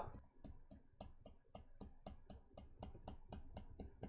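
Near silence with faint, even ticking, about five ticks a second.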